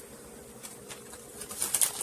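Faint steady hum, with a few light clicks and rustles in the last half second as food is handled on a baking tray.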